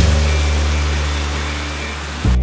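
Loud steady rush of wind on the camera microphone and surf washing onto a sandy beach, with a deep rumble underneath, slowly fading.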